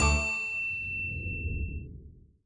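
Theme music ending on a final struck note, a high bell-like ding over a low chord that rings out and fades away over about two seconds.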